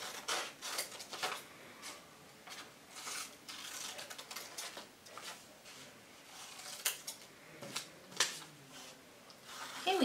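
Scissors cutting a paper worksheet: a string of short, irregular snips with paper rustling between them.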